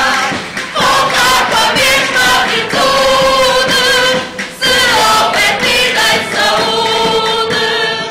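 A group of men and women singing a song together in chorus, with guitars strumming along. The singing breaks off briefly about four and a half seconds in and stops at the very end.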